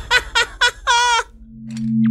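Film sound effects from Loki's glowing scepter: a run of short high chirping notes, about four a second, ending in one longer wavering note, then a steady low hum as the scepter charges up.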